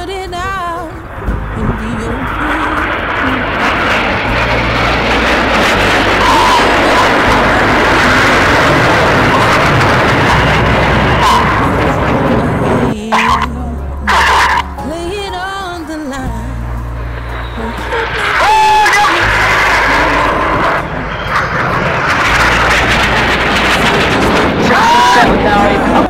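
BAE Hawk T1 jets flying past in formation: a loud, steady rush of jet noise that builds over the first few seconds, dips about halfway through and builds again for the second half. A voice and music from the public address come through in the lull.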